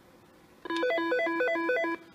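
A Nortel T7316 business desk phone plays its ringer while a ring type is being picked with Feature *6. The ring is a fast pattern of electronic tones stepping between pitches; it starts about two-thirds of a second in and cuts off just before the end.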